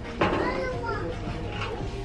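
Faint background voices with a child's high wavering voice, over a steady low hum of room noise.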